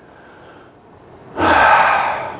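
A man takes one loud, sharp breath about one and a half seconds in, after a moment of quiet.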